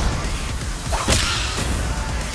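A fast whip-like whoosh about a second in, with a low steady bass underneath.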